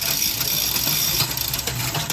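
Bicycle drivetrain turned in a repair stand: the chain running over a Shimano 105 Di2 12-speed cassette and rear derailleur pulleys, a steady whirring hiss.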